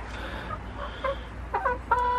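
Hens clucking: a few short, soft notes, several in quick succession near the end.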